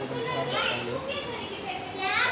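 Several people's voices overlapping, raised and lively, with a high rising voice near the end.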